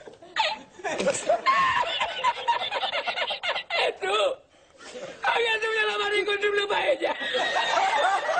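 A man laughing hard: choppy bursts of laughter, a short break about four and a half seconds in, then a long, high-pitched held laugh lasting about two seconds.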